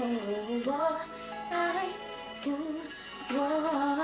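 A woman singing solo in a Mandarin pop style, sliding down through a phrase and then holding long, drawn-out notes with no clear words.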